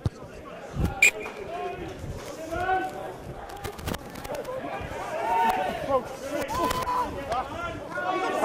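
Indistinct talk and shouts from players and spectators around a rugby pitch, picked up from a distance, with a single sharp thump about a second in.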